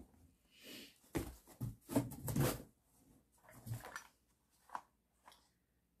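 Handling noise from sorting through a cardboard box of boxed and bottled items: packaging rustled and knocked in irregular short bursts with quiet gaps, the busiest stretch a little over a second in.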